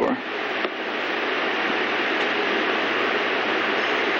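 A steady hiss of background noise, building slightly in the first second and then holding even, with no distinct events.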